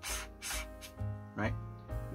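Soft background music with held notes. Near the start, a brief dry rubbing as a plastic wide-angle lens attachment is screwed onto the camera's threaded lens mount.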